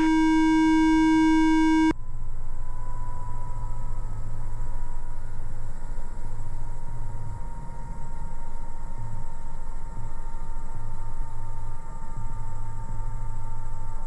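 A loud, steady electronic warning tone with many overtones in the helicopter intercom, cutting off abruptly about two seconds in. Then the EC130's Safran turbine and rotor run at ground idle: a steady low hum with a faint whine that slowly falls in pitch.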